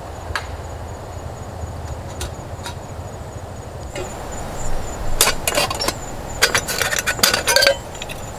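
Metal camp cookware clinking and knocking as an aluminium kettle is set on a gas-canister stove and its lid is handled. This comes as a cluster of sharp clinks, some ringing briefly, from about five seconds in. Before that there is only a faint steady background with a thin high tone and a few soft clicks.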